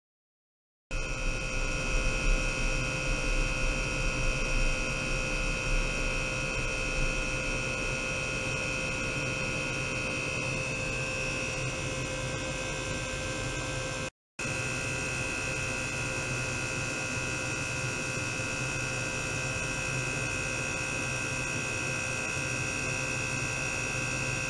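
Small electric pump unit running steadily to circulate water through an ultrasonic test tank, a constant hum with a high whine on top. The sound cuts out completely for the first second and again for a moment about 14 seconds in.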